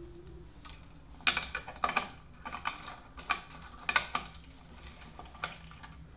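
Small irregular clicks and taps, roughly a second apart, of a metal bridge from another guitar being tried onto the bridge studs of a 1950s Gibson Les Paul Junior; the bridge does not fit the early-'50s studs.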